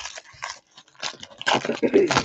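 Foil trading-card pack wrappers crinkling and being torn open by hand, in irregular crackly bursts that are loudest near the end.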